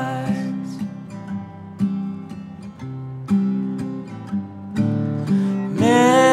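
Acoustic guitar strumming chords in a folk song's instrumental break between sung lines; a held, sliding melody line comes back in near the end.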